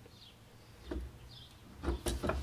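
Mostly quiet room tone with soft handling knocks as a wooden rifle stock is shifted in a checkering cradle: a faint one about a second in and a louder dull thump near the end.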